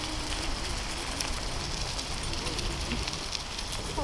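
Bicycle tyres rolling over fallen leaves and a dirt trail: a steady crackle of many small clicks, with wind rumble on the microphone.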